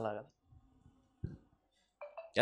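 A man's speaking voice ending a phrase, then a pause broken by one short click about a second and a quarter in.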